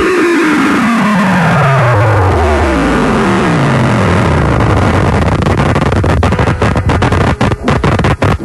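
Radio station production music: the whole mix slows and falls in pitch over about three seconds, like a tape stop. A dense, noisy guitar texture follows, and near the end it breaks into a rapid stuttering, chopped-up effect.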